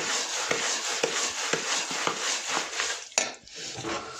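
A metal spatula stirring and scraping a thick, grainy adadiya mixture of roasted urad flour in a steel pot, with many small clicks of metal on steel. A sharper knock comes a little after three seconds, then the stirring briefly drops away.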